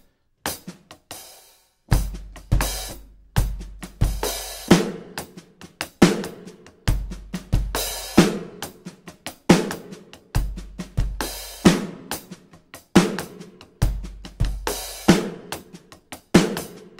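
Roland V-Drums electronic drum kit, heard through its sound module, playing a slow funk groove. Kick, snare and a broken hi-hat pattern are split between the right and left hands, with open hi-hat splashes. A few scattered hits come first, and the groove starts about two seconds in.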